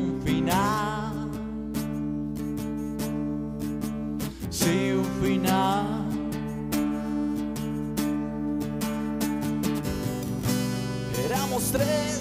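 Acoustic rock song: strummed acoustic guitar holding steady chords, with a wavering lead melody line over it near the start and again about halfway through.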